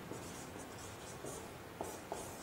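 Marker pen writing on a whiteboard: faint, short scratchy strokes, with a light tap near the end.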